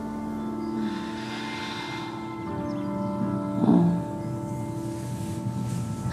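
Soft ambient background score of sustained, bell-like held tones. A brief louder sound cuts in a little over halfway through.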